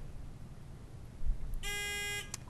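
Quiz-bowl buzzer giving one steady, pitched electronic buzz of about half a second, starting about a second and a half in: a contestant buzzing in to answer.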